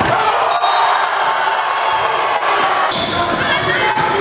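Game sound in a school gymnasium during a basketball game: a steady din of crowd voices with a basketball bouncing on the hardwood court and a few sharp knocks.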